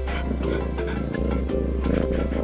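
Music with a steady deep bass note, overlaid with animal growling sound effects.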